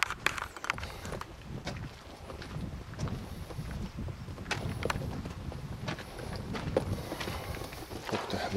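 Footsteps on limestone rock: an irregular run of scuffs and clicks, with one sharp click right at the start, over a low rumble.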